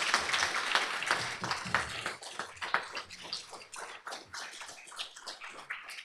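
Audience applauding: dense clapping at first that thins out and fades over the last few seconds.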